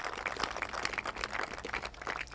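Audience applauding: a dense run of hand claps.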